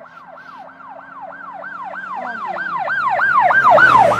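A siren in a fast yelp, its pitch sweeping up and down about four times a second and growing louder toward the end.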